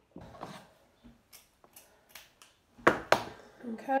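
String and craft materials being handled on a table: a series of short scratchy rustles, then two sharp clacks in quick succession about three seconds in, the loudest sounds. A woman's voice starts speaking near the end.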